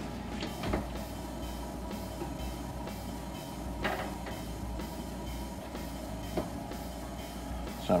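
A wall oven's door is opened and a damp leather mask piece is set on the wire rack: a few light knocks and clicks over a steady low hum.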